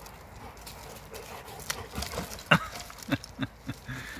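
Two dogs, a Bernese mountain dog and a flat-coated retriever, play-fighting on gravel: from about halfway through, a quick run of about five short, low grunts and growls, the loudest just past the middle, over paws scuffing on the stones.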